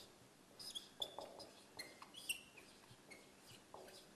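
Dry-erase marker squeaking faintly on a whiteboard in a series of short strokes as letters are written, with light ticks of the pen tip against the board.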